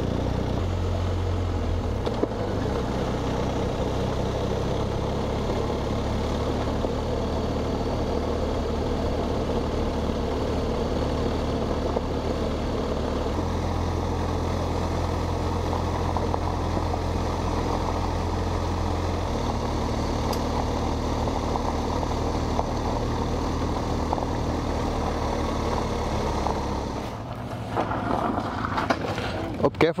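BMW R1250 GS Adventure's boxer-twin engine running with the bike under way, mixed with road and wind noise. Its low hum steps up and down a couple of times with speed. Near the end it drops off as the bike slows.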